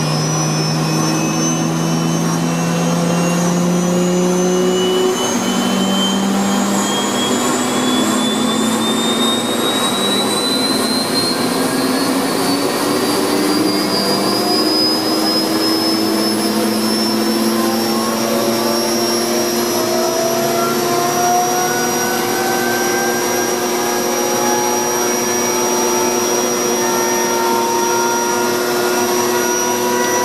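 Eurocopter SA-332L1 Super Puma's Turbomeca Makila turboshaft engines spooling up during start, heard from the cockpit: a loud turbine whine with several tones rising slowly and steadily in pitch over a continuous rush.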